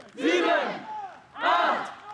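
A group of people shouting together in rhythm, two loud shouts about a second apart, in time with their bench dips.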